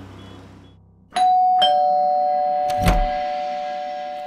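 Doorbell chiming a two-note ding-dong, the higher note about a second in and the lower one half a second later, both ringing on. A short thump comes about three seconds in, and background music fades out at the start.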